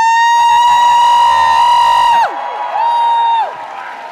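A high-pitched vocal 'oouh!' slides up, is held for about two seconds and drops away, then comes again more briefly about a second later.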